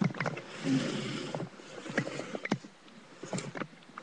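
Handling noise from a webcam being picked up and moved close to a plastic toy house: a string of clicks and knocks with rubbing and rustling, thickest in the first second and a half and again near the end.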